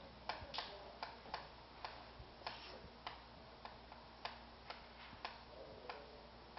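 Chalk tapping and scraping on a blackboard while a small figure is drawn: faint, short ticks at uneven spacing, about two or three a second.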